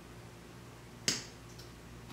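A single sharp click a little past halfway, followed by a much fainter one about half a second later, over quiet room tone.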